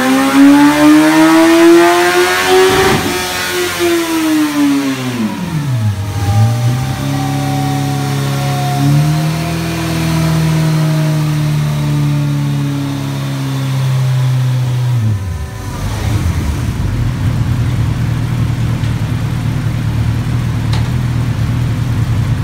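Kawasaki ZX-14R's 1,441 cc inline-four with a full Akrapovic exhaust, revving up on a dyno pull for about three seconds. The throttle then shuts and the revs fall away. It holds a steady lower speed for several seconds, then drops back to idle about fifteen seconds in.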